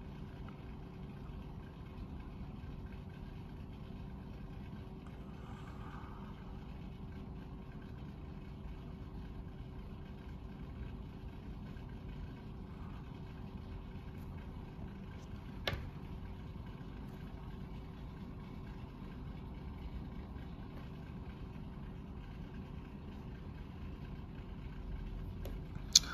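Faint steady hum with a low drone, broken once by a single short click about two-thirds of the way through.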